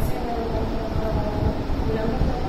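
A woman's voice speaking, distant and indistinct, under a loud, steady rumbling noise.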